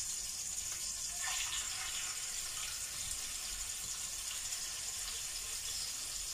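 Marinated meat sizzling steadily in hot oil in a frying pan as the pieces are laid in with tongs.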